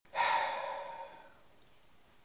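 A single breathy exhale or sigh close to the microphone, about a second long and fading away, followed by faint hiss.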